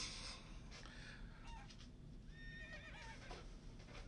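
A horse whinnying faintly, with a wavering high call from about two seconds in.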